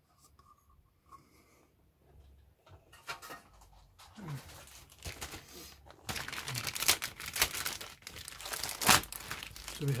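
Clear plastic bag crinkling and rustling as the plastic model-kit sprues inside it are handled, faint at first and building from about three seconds in to its loudest in the last few seconds.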